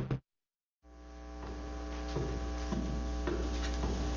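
Electronic music with a beat cuts off just after the start. After half a second of silence a steady electrical mains hum from powered loudspeakers rises in and holds, with a few faint clicks over it.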